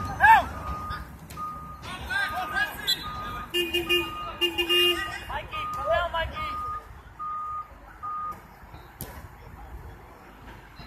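Players shouting during a soccer game, the loudest shout just after the start. Behind them a steady series of short single-pitch beeps, about one and a half a second, like a vehicle's reversing alarm, stops a little after eight seconds in, and two short blaring horn-like tones sound between about three and a half and five seconds in.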